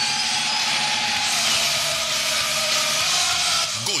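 A produced radio sound effect: a steady rushing noise with faint drawn-out tones, cut in abruptly after the goal call and leading into the sponsor jingle.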